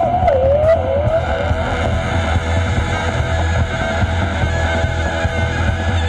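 Live rock band with a folk tinge playing: a woman's sung note with wide vibrato slides down and ends about a second in, then sustained high tones carry on over steady bass and drums.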